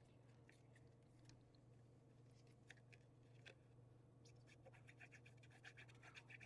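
Near silence: faint scratches and small ticks of paper cards being handled, more frequent in the last two seconds, over a low steady hum.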